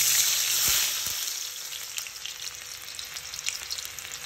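Julienned ginger dropped into hot refined oil in a kadhai, sizzling loudly at first and settling after about a second into a steadier, quieter sizzle with scattered pops.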